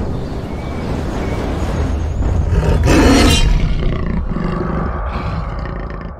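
Animal roar sound effect over a deep rumble, building to its loudest about halfway through and then slowly fading.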